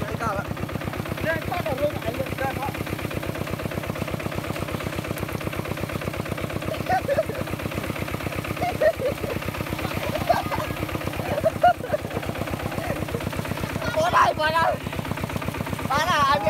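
Kubota tractor's diesel engine running steadily under load through a muddy paddy field, its firing beats rapid and even.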